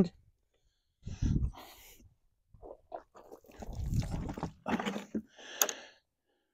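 Scattered handling noises, scrapes and crunches with a sharp click near the end, as a full five-gallon plastic bucket of sugar syrup is lifted by its wire handle, turned upside down and set down onto bricks.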